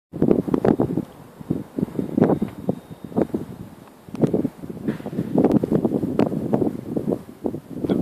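Wind buffeting the microphone of a camera held on a moving train, in uneven gusts and thumps.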